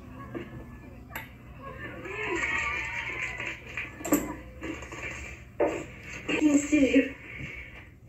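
Soundtrack of the film playing: several voices talking indistinctly, louder in short bursts near the end, with faint music underneath.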